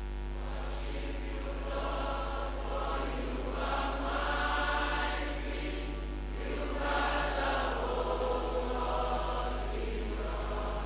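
A congregation singing a slow worship song together, many voices at once, in long held phrases that swell and ease.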